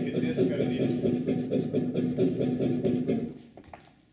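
Homemade analog looper playing back a prototype disc of bus-ticket magnetic stripes through a tape playhead on a modified turntable: a harsh, unmusical, rapidly pulsing garble over a steady low hum. It cuts off a little past three seconds in.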